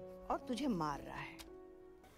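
Film soundtrack: a voice speaking a line over soft, sustained background music. It cuts off shortly before the end, leaving quiet room tone.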